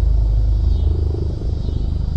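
A pair of military helicopters flying over, heard as a steady low, fast rotor chop.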